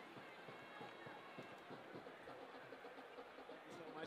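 Near silence: faint background voices and open-air stadium ambience.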